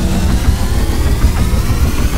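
Cinematic logo-reveal sound effect: a loud, deep rumbling riser that slowly climbs in pitch as it builds up.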